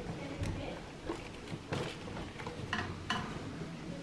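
Faint, scattered rustling and light clicks of pet rats scrambling out of a plastic carrier and running over paper bedding.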